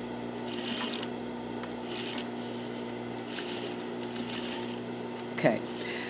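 Sewing machine edge-stitching a welt pocket: several short runs of rapid needle clatter over a steady motor hum.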